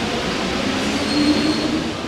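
Sound effect of a metro train running: a steady rushing noise with a brief thin high whine in the middle.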